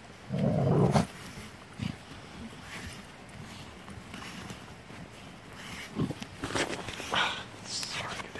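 Pit bulls digging and nosing at a hole in dirt. A short low dog growl comes about half a second in and is the loudest sound. Scattered scrapes and scuffs of paws in the dirt follow, with a rougher run of them near the end.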